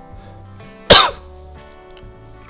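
A single loud cough about a second in, over steady background music with guitar.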